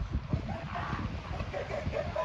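Northern elephant seals calling across a crowded colony of adults and pups, several short calls overlapping one another.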